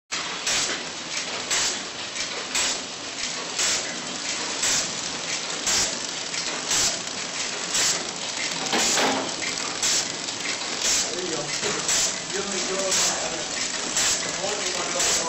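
Pillow-type flow-wrap packaging machine running, with a steady mechanical clatter and a sharp clack about once a second, in time with its wrapping cycle, and smaller clicks between.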